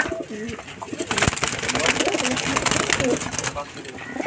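Domestic pigeons cooing in a crowded wire-mesh loft, with scattered short clicks and scuffles from birds moving in the cages.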